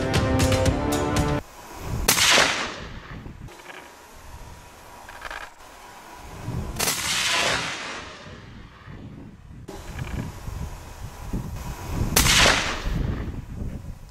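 Three 25-06 rifle shots about five seconds apart, each a sharp crack followed by a long echo rolling off the hills; the middle shot is softer. Background music plays at the start and stops just before the first shot.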